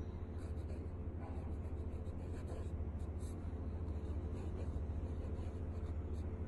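Dip pen nibs scratching across paper in short, irregular strokes while writing, over a steady low hum.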